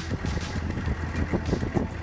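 AM General M1097A2 Humvee's 6.5-litre diesel running at low speed, heard from inside the cab, with frequent loose metal rattles and clanks from the body and seat backs.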